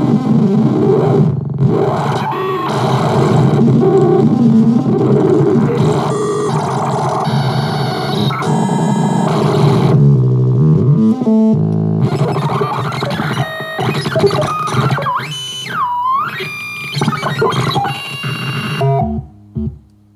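Handheld digital glitch synthesizer, whose sound follows a sketch drawn on its small screen, playing harsh, noisy glitch sounds that keep switching texture. About fifteen seconds in, a tone swoops down and back up, and the sound drops away near the end.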